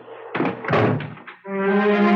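A loud, brass-like musical chord strikes suddenly about one and a half seconds in and is held, ringing on: a dramatic music sting marking the end of an act.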